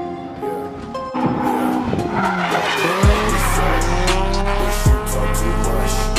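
Drift car engine revving with tyres squealing as it slides, mixed over a rap track; the track's heavy bass beat comes in about three seconds in.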